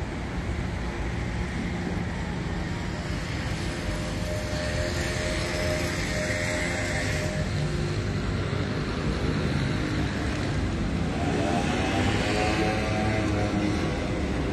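Urban street traffic noise: a steady wash of engine and road sound, with a vehicle engine rising and then falling in pitch a couple of seconds before the end.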